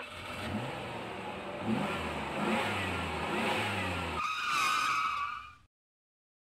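Outro sound effect of a motor vehicle's engine revving up in several rising pulls. About four seconds in it gives way to a loud, horn-like high tone that cuts off suddenly.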